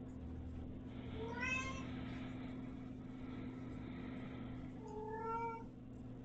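A kitten meowing twice: a short call about a second and a half in, then a longer, steadier one near the end.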